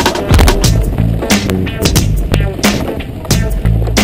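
Background music with a steady beat and a bass line, over the rattle and crunch of mountain bike tyres rolling down a trail of loose rock and gravel.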